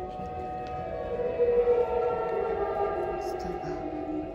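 Ambient background music of long held tones that slide slowly up and down in pitch.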